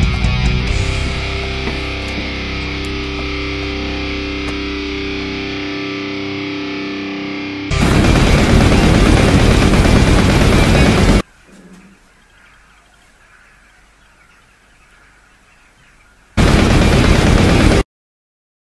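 Distorted electric guitar music with long held notes, cut off about eight seconds in by a loud burst of rushing noise lasting about three seconds. After a quiet stretch, a second shorter burst of the same loud noise comes near the end and stops suddenly into silence.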